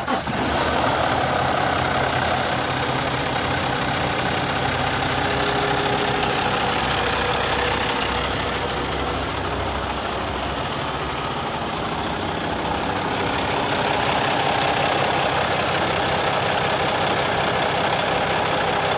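Cummins ISX15 inline-six diesel engine of a 2014 Kenworth T660 idling steadily with the hood open, right after being started.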